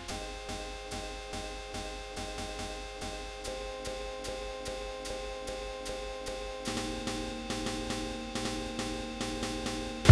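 An AI-generated music sample loop playing quietly: held chord tones over a quick, even rhythm of light percussive ticks. The harmony changes about three and a half seconds in and again near seven seconds.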